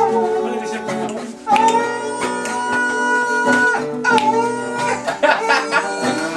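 Singing with acoustic guitar accompaniment. A long note is held in the middle while the strummed guitar goes on underneath.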